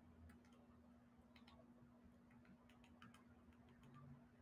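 Near silence: faint room tone with a steady low hum and a few faint, irregular clicks.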